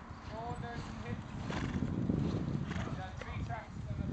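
Horse's hooves thudding on arena sand as it moves along, growing louder as it comes closer.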